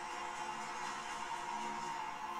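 Film trailer soundtrack music playing: a steady, sustained drone of held tones over a hiss, with no beat.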